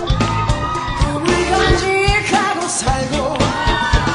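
Live rock band playing with a sung lead vocal over a steady drum beat.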